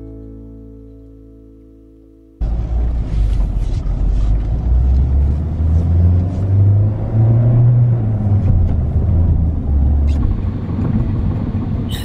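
Intro music, a strummed acoustic guitar chord, dies away over the first two seconds. Then, inside a moving Jeep, a steady low rumble of engine and road noise, with a few light knocks and rattles.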